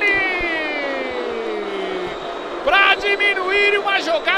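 A male sports commentator's long, drawn-out shout that falls steadily in pitch over about two seconds, followed by excited speech.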